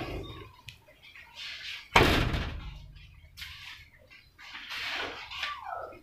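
A minivan's rear tailgate slammed shut about two seconds in, one loud hit that rings off, with a few softer knocks and rustles of handling around it. This is a test close after the latch striker was moved inward, and the tailgate now latches tight.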